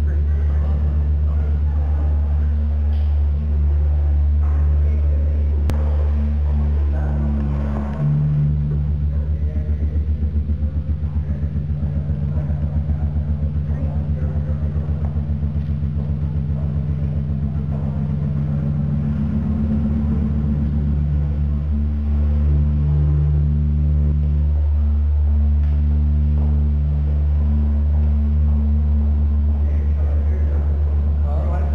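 Deep electronic bass drone from the subwoofer built into a wooden coffee-table sound sculpture under a ceramic vessel: a steady low hum with a higher buzz above it. About 8 seconds in it turns into a fast pulsing throb, then settles back into a steady drone about 20 seconds in.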